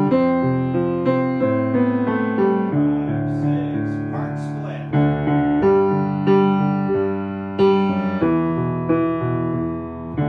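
Piano playing the bass part of a choral piece: a steady run of struck notes and chords.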